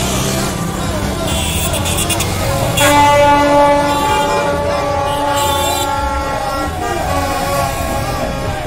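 A horn sounds one long, steady blast, starting about three seconds in and lasting about four seconds. Under it is the constant din of a shouting street crowd and motorbike engines.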